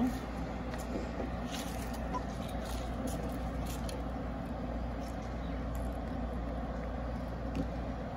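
Steady low hum of an idling engine, with a few faint clicks over it.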